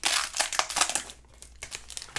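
Foil wrapper of a Panini Prizm basketball card pack being torn open and crinkled by hand. A dense run of crackling comes in the first second or so, then fainter scattered crinkles.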